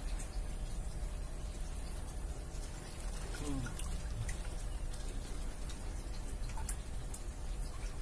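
Water dripping and splashing from a plastic mesh basket dipped into a shallow concrete crayfish tank, with scattered light clicks over a steady low hum.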